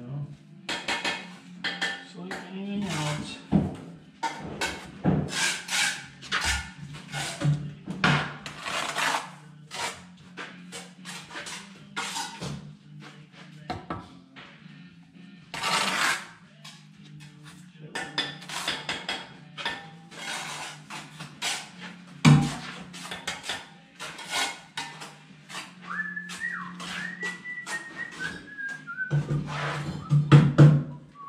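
Steel brick trowel scraping and clinking against mortar and brick as a course is laid, in a run of short scrapes and taps. Someone whistles a short tune that falls in pitch near the end.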